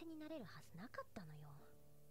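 A woman's soft, quiet voice speaking a line of anime dialogue, ending a little over a second in, then only a faint steady low tone.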